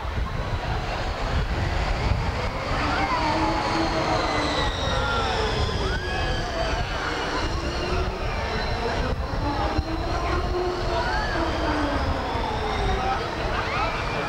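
A rail ride's train running on its track, a steady rumble with a high whine that slowly rises and falls, under people's voices.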